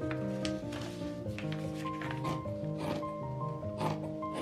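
Soft piano background music, slow held notes.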